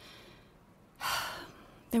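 A speaker's quick breath in, about a second in, lasting about half a second, in a pause between spoken lines.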